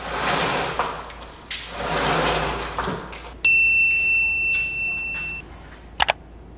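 Two long noisy swells, then a single bright chime that strikes suddenly about halfway through and rings out for about two seconds.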